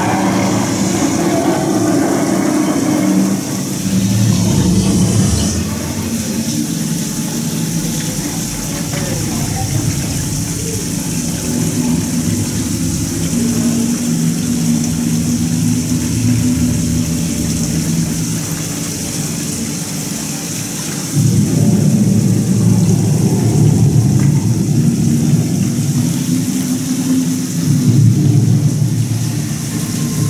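Animatronic dragon's low, rumbling growls and breaths played through the attraction's speakers, swelling louder about four seconds in and again through the last nine seconds.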